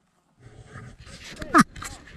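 A Saint Bernard giving a short whine that drops steeply in pitch, about one and a half seconds in, followed by a fainter second whine.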